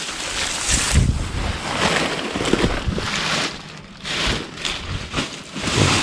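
Dry banana leaves rustling and crackling as they are trampled underfoot and pushed aside by hand, with a few low thuds from the footsteps and handling.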